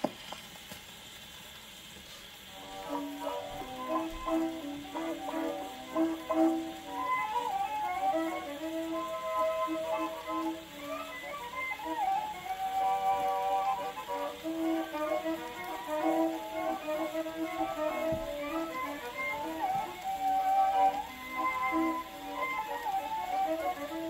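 Acoustic Orthophonic Victrola playing a 1918 Victor 78 rpm record of a violin and accordion waltz. The needle goes down with a click, surface hiss runs for a couple of seconds, then the violin and accordion come in about three seconds in over the record's hiss.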